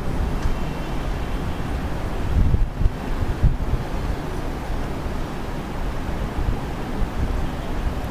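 Wind buffeting the microphone: a steady low rumble with stronger gusts about two and a half and three and a half seconds in.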